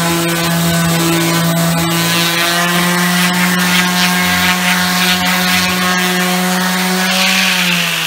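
Bosch orbital sheet sander running steadily against bare wood, its motor humming over a scratchy rubbing of sandpaper on a door stripped of paint. Near the end its pitch drops as it is lifted off the wood.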